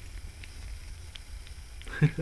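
Faint handling noise of fingers lifting and rubbing an action figure's thin rubbery coat, with a few light ticks over a low steady hum.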